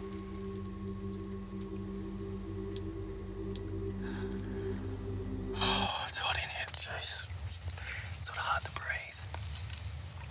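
A low steady drone of a few held pitches cuts off suddenly about six seconds in. Breathy whispering and hissing follow.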